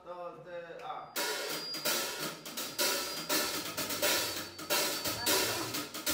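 A voice briefly, then about a second in a drum kit comes in with a steady beat, its cymbals and hi-hat to the fore.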